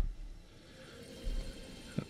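Faint handling of a cricket bat being settled onto a digital scale and let go, with one soft low bump about a second in.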